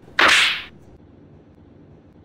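A single sharp whip-like swish sound effect, lasting about half a second and fading out quickly.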